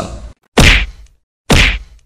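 Two sharp, loud impact hits about a second apart, each with a deep thud and a short fading tail, edited in as a sound effect.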